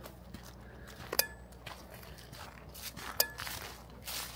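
Footsteps walking on a forest trail, quiet and faint, with two sharp clicks about two seconds apart, each followed by a brief ringing.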